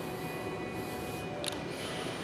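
Steady low room tone with a faint hum, and a single faint click about one and a half seconds in.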